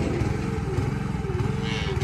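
Small engine running steadily: the hydraulic power unit of a cattle squeeze chute.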